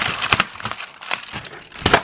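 Cardboard door of a chocolate advent calendar being pried and torn open: crinkling and tearing with several sharp cracks, the loudest near the end.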